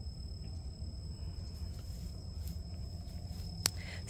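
Outdoor garden ambience: a steady low rumble under a faint, steady high-pitched insect drone, with a single click near the end.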